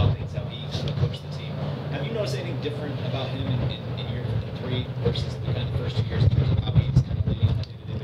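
Speech: a man's voice asking a question, thinner and more distant than the podium voice, over a steady low hum.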